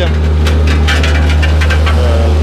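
Heavy road-works machinery engine running steadily with a deep, even drone, with irregular clatter over it in the second half.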